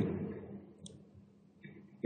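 A pause in a man's speech at a close microphone: his voice trails off, and one faint, sharp click comes a little under a second in against quiet room tone.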